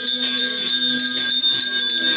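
Devotional puja music: bells ringing over sustained ringing tones, with jingling percussion keeping a quick, steady beat.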